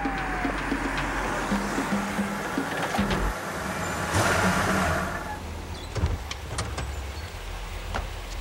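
Film soundtrack of a police car and street noise under a low music score: a falling siren tone fades out just after the start, a louder rush of noise comes around four seconds in, and a few sharp clicks sound near the end.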